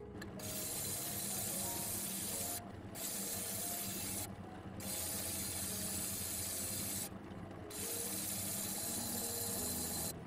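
Flat lap grinder grinding on its wet spinning disc, a steady gritty hiss that starts just after the beginning and breaks off briefly three times as contact is lifted.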